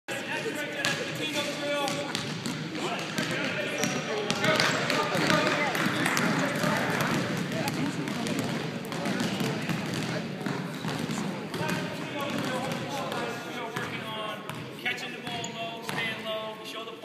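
Several basketballs bouncing on a hardwood gym floor as children dribble, the bounces coming irregularly and overlapping one another.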